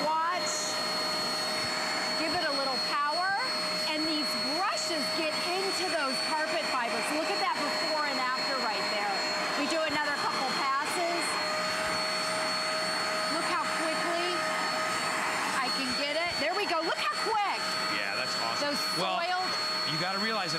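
Hoover Spotless portable carpet spot cleaner running with a steady whine as its suction hand tool is worked back and forth over a stain on carpet, drawing up the cleaning solution.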